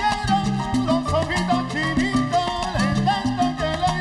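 A live salsa conjunto playing with piano, upright bass and congas, with a steady salsa rhythm and repeating bass line.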